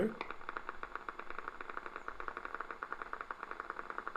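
Single-fibre EMG audio from a concentric needle electrode, played through the EMG machine's loudspeaker: a steady, regular train of sharp clicks at about a dozen a second. This is a motor unit firing at a constant rate during a slight voluntary contraction.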